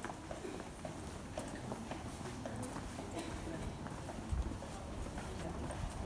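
Footsteps of people walking on a cobblestone street, a steady stepping of about two steps a second.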